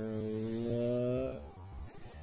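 A steady low hum, rising slightly in pitch, that cuts off a little over a second in; fainter scattered noise follows.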